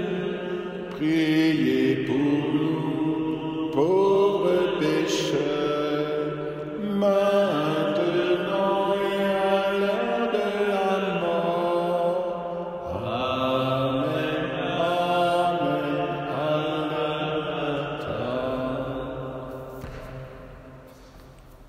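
A slow hymn to the Virgin Mary sung in a chant style, with long held notes, fading out near the end.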